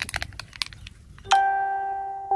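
Short scraping crackles of a hand working loose soil. A little past halfway, a single bright, bell-like musical note sounds suddenly and rings on, slowly fading. It is the loudest thing heard.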